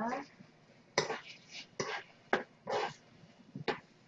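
Chopsticks knocking and scraping in a wok as stir-fried ramen noodles are stirred: a handful of short, separate strokes with quiet gaps between.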